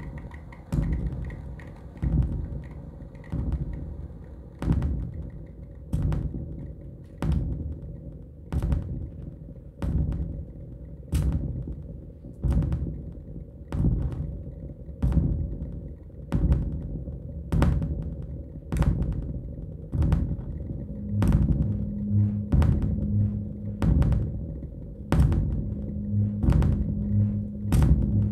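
Live electronic noise music: a slow, even pulse of sharp low thuds, about one every 1.2 seconds, each trailing into a low rumble over a steady drone. About two-thirds of the way in, a steady low hum with a fluttering throb underneath joins the pulse.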